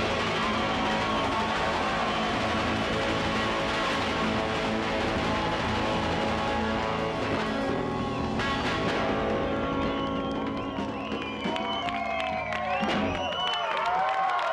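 Live rock band (electric guitars, bass and drum kit) playing loud and steady, with the low notes held. About two-thirds of the way through the top end thins out, and high wavering squeals rise over the music in the last few seconds.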